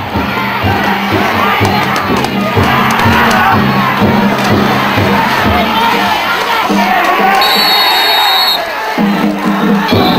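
Large crowd of danjiri pullers and spectators shouting and cheering without a break as the festival float is hauled past, with a steady low drone underneath. A brief high steady tone sounds for about a second near the end.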